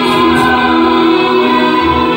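Live band playing on stage, with several voices singing together over the instruments and drums.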